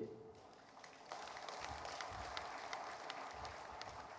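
Faint audience applause beginning about a second in: a steady wash of many separate hand claps.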